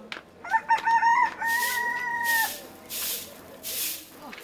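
A rooster crowing once: a choppy opening that runs into one long held note lasting about two seconds. Short swishing, hiss-like noises repeat during and after the crow.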